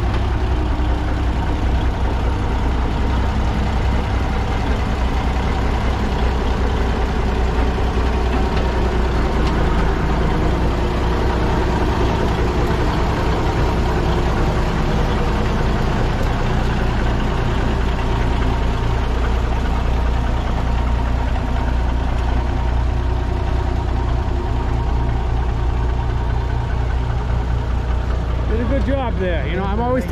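Diesel engine of an International Transtar cabover truck idling, a steady even drone as the truck creeps slowly into its parking spot.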